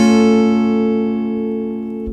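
Acoustic guitar, capoed at the third fret, letting one chord ring out and slowly fade. The chord is an E minor over A.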